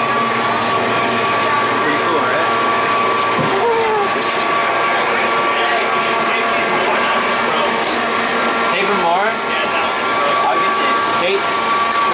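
Electric motor and pump of a trailer's platform lift running steadily with a constant whine as the loading elevator moves, cutting off abruptly at the end.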